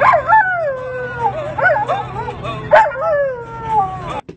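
A dog howling along to an acoustic guitar. It gives long howls that slide down in pitch, with a sharp new rise at the start, another about a second and a half in, and another near three seconds.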